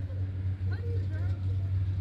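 Steady low engine hum from a motor vehicle running nearby, with faint voices in the background.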